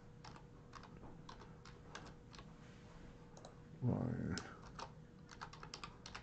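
Typing on a computer keyboard: scattered keystrokes with a quicker run near the end.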